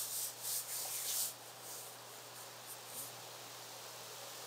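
Faint soft rubbing noise: a few brief swishes in about the first second, then low steady hiss.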